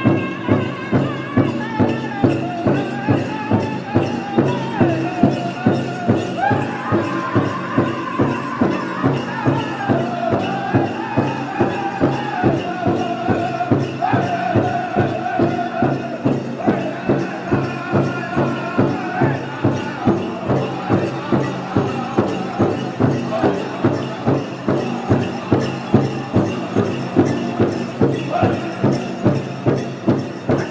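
Powwow drum group singing together over a steady, even beat on a large powwow drum.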